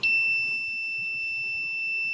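Anesthesia training manikin's sensor buzzer giving one steady, high-pitched beep, the signal that the needle has reached the correct depth and angle for a posterior superior alveolar (PSA) injection.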